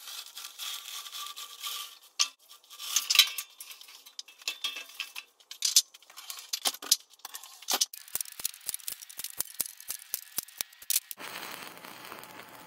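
Sped-up metalwork in a workshop: rapid irregular clanks, clinks and scrapes of steel parts being handled, then a run of quick evenly spaced clicks, about five a second. A steady hiss starts just before the end.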